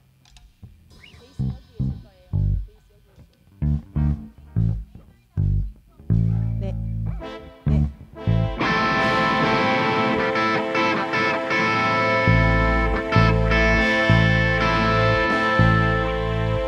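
Electric bass guitar and electric guitar through stage amplifiers, being checked before a song: single bass notes plucked one at a time, then from about eight seconds in guitar chords ringing out over held bass notes.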